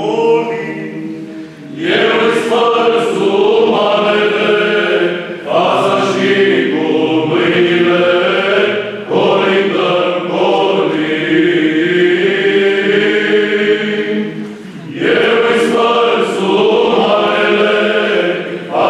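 Male Byzantine psaltic choir singing a Romanian carol (colind) a cappella, in long held phrases broken by four short pauses for breath.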